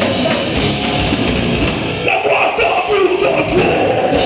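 Live heavy rock band playing loud: distorted electric guitar, drum kit and a vocalist on microphone. About halfway through, the low end of the drums and bass drops out for a moment before the full band comes back in.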